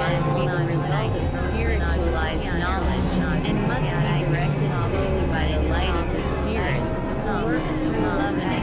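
Experimental electronic noise music: layered synthesizer drones with a low bass that briefly drops out about a second in and again about five seconds in. Over it run steady held tones and dense, quick, warbling chirps that sound voice-like.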